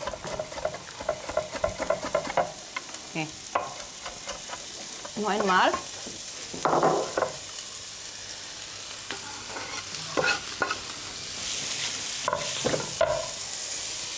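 Chopped vegetables frying in a pan with a steady sizzle that grows brighter a little past the middle. Knife chops on a cutting board sound in the first couple of seconds.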